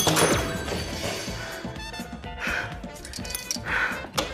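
Background music with a sudden loud hit right at the start, then two rough, heavy breaths from a tired person, one in the middle and one near the end.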